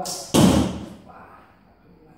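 Traditional recurve bow being shot: a brief hiss, then a sudden loud thump of the release about a third of a second in, which dies away within half a second.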